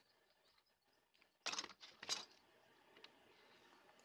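Near silence, broken by two brief soft scuffs about one and a half and two seconds in, from a hand rubbing over a drilled walnut block.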